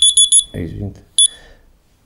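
Mobile phone beeping: a quick run of four high-pitched beeps, then a single short beep just over a second in, as the phone is handled and stopped.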